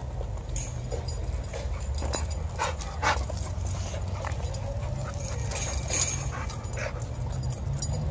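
Dogs playing together on leashes, with scattered short clicks and scuffs and a faint drawn-out whine about halfway through.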